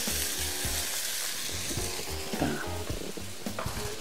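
Floured chicken pieces and bacon frying in a stainless steel pot, sizzling steadily.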